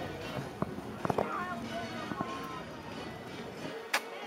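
Outdoor ambience of a busy walkway: faint background music and distant voices, with a few soft clicks and one sharp click just before the end.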